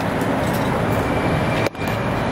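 Steady road and engine noise inside a moving car, which cuts out briefly near the end.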